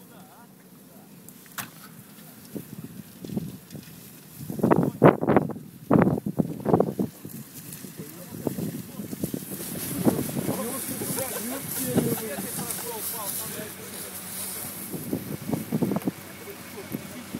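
Indistinct voices of people outdoors, with a few loud calls about five seconds in, then a steady high hiss through the second half.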